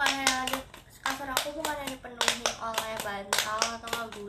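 A voice singing long, level notes, with sharp claps a few times a second between and over them.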